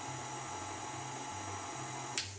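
Tilt-head stand mixer running steadily with a flat beater, mixing chocolate cake batter: an even motor hum with a fixed whine.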